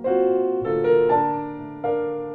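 Bösendorfer Model 170 grand piano playing the solo introduction of a slow jazz ballad: chords struck a handful of times and left to ring and fade between strikes.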